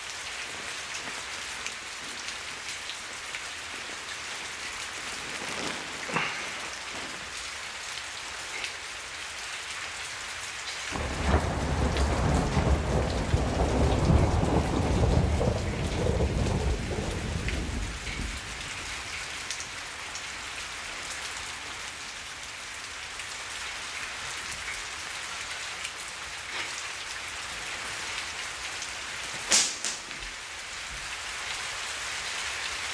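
Steady rain falling throughout. About eleven seconds in, a long rumble of thunder swells and fades over some six seconds; it is the loudest sound. A sharp crack comes just before the end.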